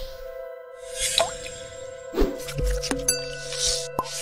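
Electronic intro jingle over held synth tones, with short whooshes and watery pops about a second, two seconds and three and a half seconds in.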